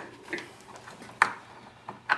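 Light handling of a carbine and hand tools on a wooden workbench, with one sharp click about a second in and a couple of fainter ticks.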